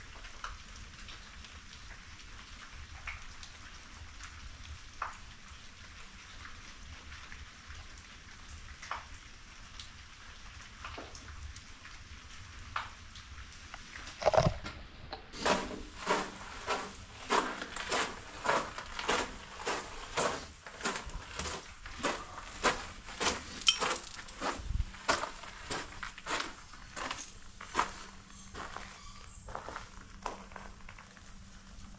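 Footsteps walking along a concrete drain tunnel, about two steps a second, starting about halfway through after a single louder knock. Before the walking, only a few faint scattered ticks over a low hiss.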